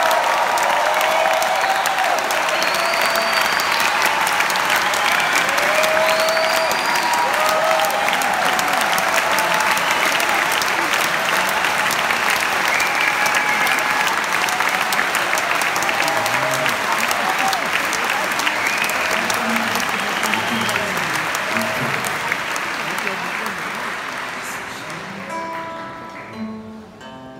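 A large audience applauding, with scattered cheers and whistles, the applause dying away over the last few seconds.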